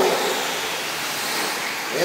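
A pack of 1/10-scale four-wheel-drive radio-controlled short course trucks racing on an indoor dirt track, heard as a steady rushing noise of motors and tyres.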